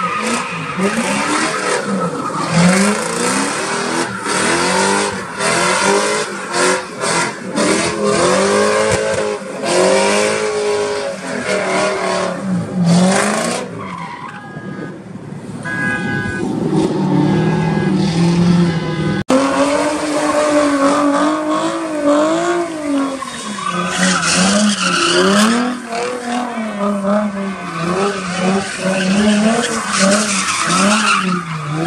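Ford Mustangs doing donuts: the engine revs up and down in waves while the tyres squeal and skid on the pavement. After the middle the sound eases for a few seconds, then breaks off suddenly, and a second car's engine takes over, revving and wavering the same way.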